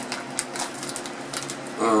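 A few faint crinkles and clicks from a plastic popcorn bag being handled, over a steady low background hum.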